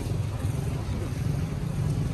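Steady low rumble of nearby motor traffic, with no clear single event.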